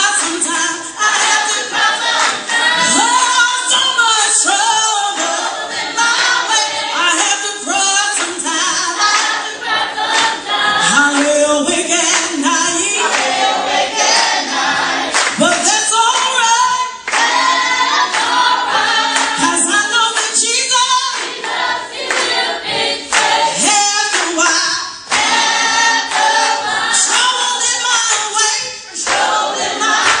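A church congregation and group of singers singing a gospel song together, with hand-clapping.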